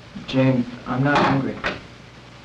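A short, low-voiced utterance in two parts, words not made out, with a sharp knock near its end.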